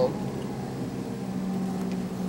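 Houseboat's engine running steadily at trolling speed, a low even hum.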